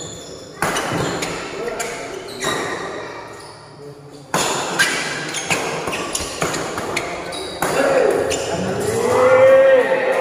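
A shuttlecock is struck back and forth with badminton rackets during a doubles rally, making sharp hits at irregular intervals that echo in a large hall. Players shout near the end as the rally finishes.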